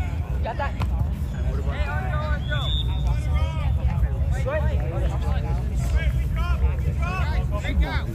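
Scattered voices of players and spectators calling out across an outdoor soccer field, over a steady low rumble. A short high tone sounds about two and a half seconds in.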